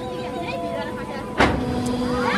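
Amusement ride machinery gives one loud clunk about one and a half seconds in, followed by a low steady hum, over faint chatter and a steady background tone.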